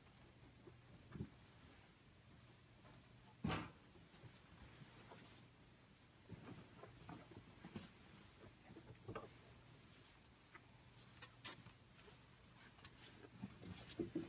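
Near silence with faint handling sounds of a bed sheet being spread and tucked in on a hospital bed. There is a soft knock about three and a half seconds in and a few light clicks near the end, over a faint low hum.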